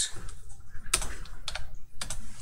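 Computer keyboard being typed on: a few separate keystrokes, short sharp clicks spaced out over the two seconds.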